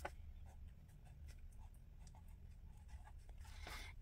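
Faint scratching of a fine-tip pen on journal paper, in short separate strokes as a word is handwritten.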